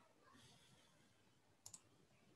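A single computer mouse click near the end, heard as two quick ticks close together, over faint room noise.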